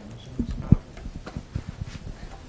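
A handful of irregular low thumps and knocks, the loudest about three quarters of a second in.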